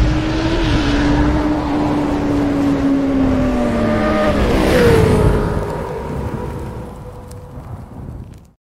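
Motorcycle engine sound effect: a low boom, then a steady engine note that sags slowly, drops sharply in pitch about five seconds in like a pass-by, and fades away.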